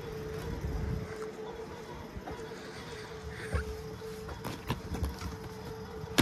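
DVD player's disc tray closing with a short motor rumble in the first second, then the player working at the disc with a few sharp clicks in the second half, over a steady hum.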